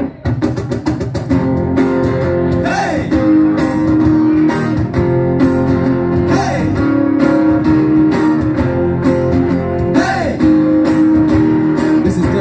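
Live acoustic band playing: several acoustic guitars strummed in a steady rhythm, with no words sung.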